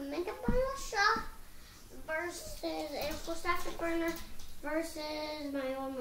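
A young child's voice singing wordless phrases, some notes held for a second or more, with a soft thump about half a second in.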